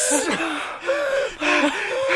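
A man laughing in about four short, high-pitched bursts, with breaths between them.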